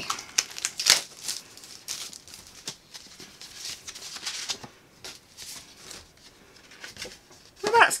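Paper packaging rustling and crinkling in irregular bursts as a packet of greeting cards is opened and handled, loudest about a second in.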